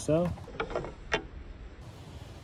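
Titanium bow of a TiGr Mini lock being slid off a Onewheel Pint's rail: a few light metal clicks, the sharpest a little over a second in.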